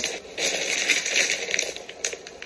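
Wrapping paper crinkling and crackling as a freshly wrapped gift box is handled and picked up, with a few sharp crackles, louder from about half a second in.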